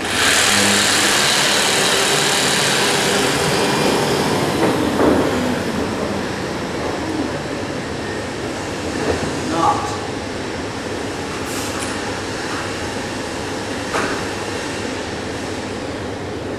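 Electric jigsaw starting suddenly and cutting into a wooden board, running loud for about five seconds before its motor winds down, leaving a steady workshop background noise with a few small knocks.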